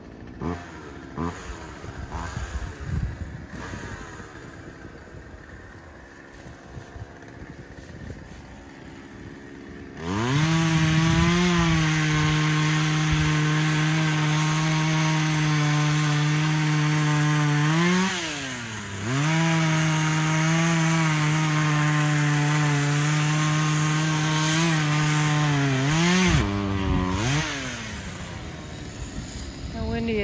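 A small two-stroke chainsaw with a 14-inch bar comes in loud about a third of the way in and runs at a steady high pitch at full throttle through a cut. Just past the middle its revs drop and climb back. Near the end they fall away as the throttle is let off. Before the saw, there are only quieter scattered knocks.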